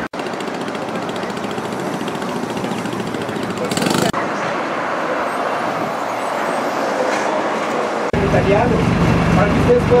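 City street noise with traffic passing, a steady hiss-like roar. About eight seconds in it switches abruptly to a bus engine running with a low rumble, with voices over it.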